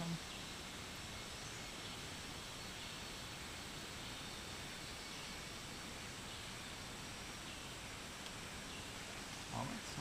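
Steady forest ambience: an even background hiss with faint high-pitched animal calls.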